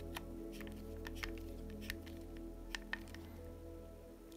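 Quiet background music with steady held tones, over a few faint, scattered clicks from a screwdriver driving a tapping screw into the hard plastic of an RC chassis sub deck.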